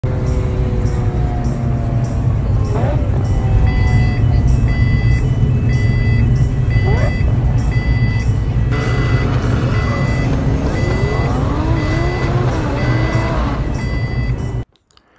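Street traffic with a steady low rumble, and an electronic beep repeating evenly about one and a half times a second from about four seconds in, typical of a pedestrian crossing signal. Rising and falling tones sound over it in the second half.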